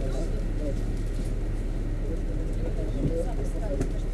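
City bus engine idling as a steady low hum, heard from inside the cabin while the bus stands at a stop, with indistinct passengers' voices.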